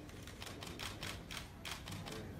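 Press photographers' camera shutters clicking rapidly and unevenly, several clicks a second overlapping from more than one camera.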